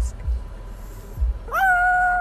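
Pug giving one long, steady, high-pitched whine that starts about a second and a half in and holds to the end.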